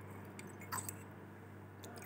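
A few faint, light clicks and clinks of glassware as a glass reagent bottle is handled, over a steady low electrical hum.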